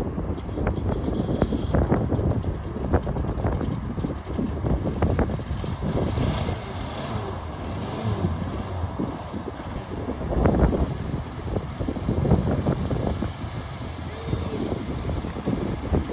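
A 1979 Volkswagen Type 2 camper's air-cooled flat-four engine running as the van moves off slowly, with wind buffeting the microphone.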